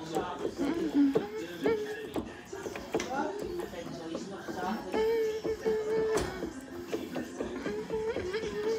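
A man singing a melody aloud, unaccompanied, with several long held notes; the keyboard he is playing along on goes only to his headphones, so just his voice is heard.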